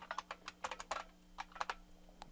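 Computer keyboard keys typed in a quick, uneven run of faint clicks, about fifteen keystrokes with a short pause near the middle, as characters are entered into a text field.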